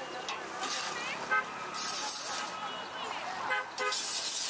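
Busy street-stall ambience: repeated rasping hiss bursts from a perforated iron ladle stirring peanuts through hot roasting sand in an iron wok. Short vehicle horn toots sound about a third of the way in and twice near the end, over background voices.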